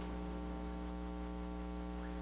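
Steady electrical mains hum in the audio feed: a low, even hum with a ladder of overtones, unchanging throughout.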